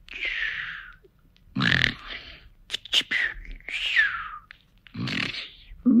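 Comic cartoon-style snoring, performed by a voice actor for a sleeping character: low rasping snores on the inhale, each followed by a whistling exhale that falls in pitch.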